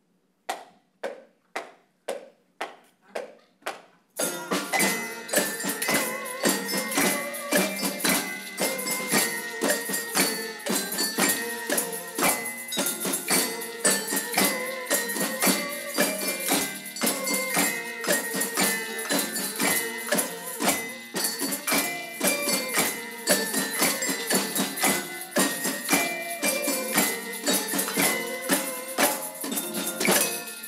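A wound-up clock ticking about twice a second, alone for the first four seconds. Then an amateur community band comes in with a tune and percussion in time with the ticks.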